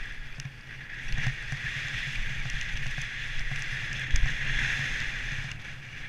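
Mountain bike descending a dirt trail, recorded from a helmet camera: wind rumble on the microphone and tyres rolling over dirt, with a steady high hiss. Louder thumps from the trail's bumps come about a second in and again about four seconds in.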